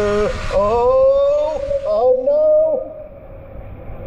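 A man's drawn-out, high-pitched cries of "ooh" and "whoa" as he speeds down an enclosed tube water slide. Under them the rush of water and sliding noise cuts off sharply about a third of a second in, leaving the cries over a fainter hiss that fades.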